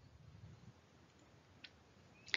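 Near silence: a faint low hum of room tone, with one short click about one and a half seconds in.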